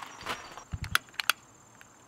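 A handful of short, sharp clicks close together, about a second in.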